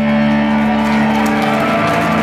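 Electric guitar feedback through a combo amp, left ringing after the song's final crash: a steady low drone with a higher whine that wavers up and down in pitch.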